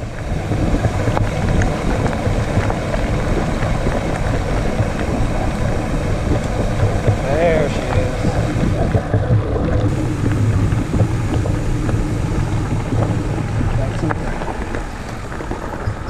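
Wind buffeting the action camera's microphone together with mountain-bike tyres rolling over a gravel road: a steady, loud low rumble.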